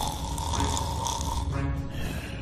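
Cartoon snoring from a sleeping water bear (tardigrade), over background music and a steady low rumble.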